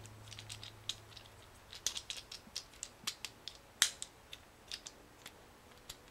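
Small plastic Transformers Legends Class Tailgate figure being handled and its parts slotted together: irregular light plastic clicks and taps, the loudest about four seconds in.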